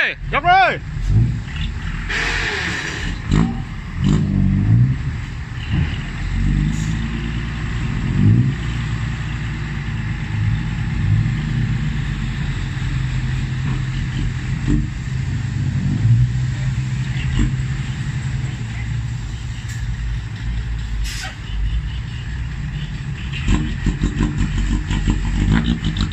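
Hino Ranger six-wheel dump truck's diesel engine running steadily, its pitch rising and falling at times in the first several seconds, while the hydraulic hoist tips the sand-laden bed up.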